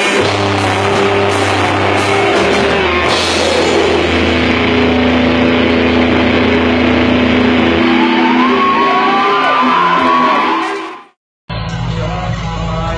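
Live rock band playing loud, with electric guitar, bass and drums, recorded from among the audience. Near the end it cuts off abruptly, a moment of silence, and a different live band recording begins.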